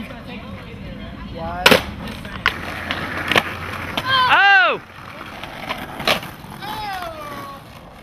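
Skateboard wheels rolling on asphalt, with sharp clacks of the board at about two, two and a half, three and a half and six seconds in. A loud drawn-out shout rises and falls about four seconds in, and a second falling call comes near the end.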